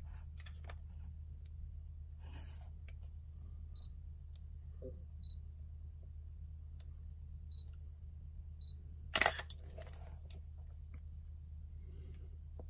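Canon DSLR's short, high focus-confirmation beeps, triggered by the Dandelion chip on the manually focused Helios-44-2 adapter: four separate beeps spread over several seconds, the sign that focus has been reached. About nine seconds in, the shutter and mirror fire once, sharp and loud, with a smaller click just after.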